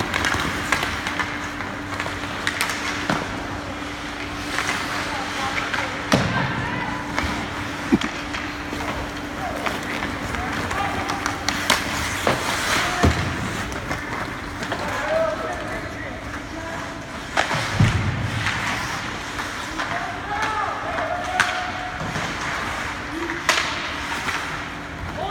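Ice hockey play in a rink: skate blades scraping and carving on the ice, with sharp knocks of sticks and puck and a few heavier thuds. Voices call out now and then, and a steady hum runs through about the first half.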